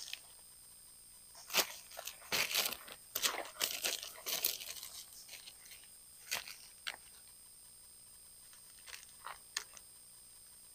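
Thin plastic model-rocket parachute crinkling and rustling in the hands as it is unfolded, in irregular bursts for a few seconds, then a few single crinkles near the end.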